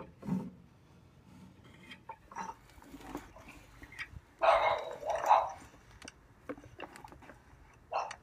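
Faint clicks and scrapes of a rake being pushed and pulled over the steel rods in the bottom of a wooden worm bin, scraping off finished vermicompost. A dog barks twice, loudly, about halfway through.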